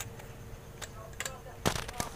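Handling clicks and knocks of a handheld digital multimeter and its test probes as it is picked up and brought to the circuit board: a couple of faint ticks, then a quick cluster of sharper clicks near the end.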